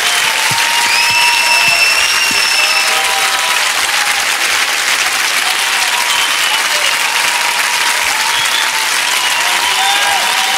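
Large studio audience applauding steadily, with a few thin, high held tones over the clapping.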